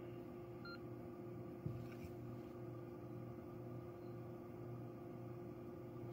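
Quiet gap between radio transmissions: a low steady hum, with one short electronic beep about two-thirds of a second in and a soft knock just before two seconds.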